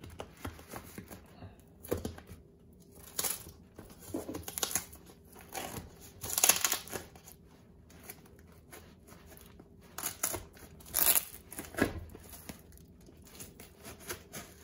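Plastic wrapping on a parcel being picked at, torn and peeled off by hand, crinkling in irregular bursts. The loudest tears come about six and a half and eleven seconds in.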